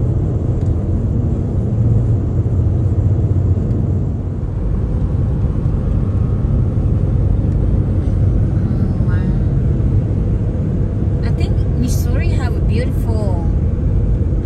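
Car cabin noise at highway speed: a steady low rumble of tyres and engine heard from inside the car. Brief voices cut in about nine seconds in and again near the end, with a few sharp clicks.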